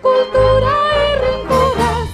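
Music: a sung hymn, with a voice holding long notes with vibrato that step up in pitch, over instrumental accompaniment, with a short break about a second and a half in.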